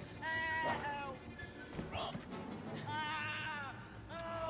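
Film soundtrack: a tense score with two high, wavering cries that fall in pitch, one just after the start and one about three seconds in.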